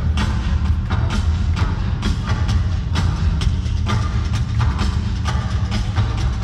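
Live heavy metal music heard loud from the crowd in an arena: sharp drum hits two or three times a second over a dense, continuous low bass.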